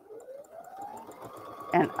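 Baby Lock Accord sewing and embroidery machine starting to stitch. Its motor whine rises in pitch over about a second, then runs steady with a quick ticking of stitches as it sews through the layered denim of a jeans hem.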